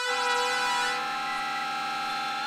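ASM Hydrasynth synthesizer holding a single note at a steady pitch, with a lower note underneath that fades out about a second in.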